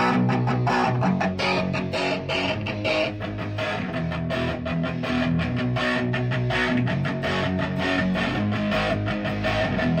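Electric guitars played together through amplifiers, strumming full chords in a fast, even rhythm.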